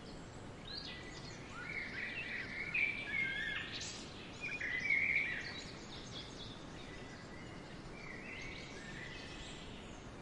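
Wild songbirds chirping and singing short phrases over a steady outdoor background hiss. The calls are loudest a few seconds in and come again near the end.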